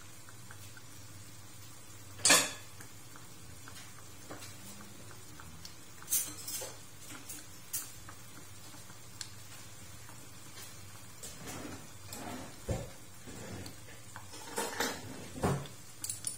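Occasional clinks and knocks of kitchenware, such as dishes, a pan and utensils, being handled. The loudest is about two seconds in, with a few more scattered later and a small cluster near the end.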